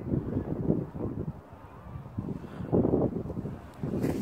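Wind buffeting the microphone outdoors: an irregular low rumble that rises and falls in gusts.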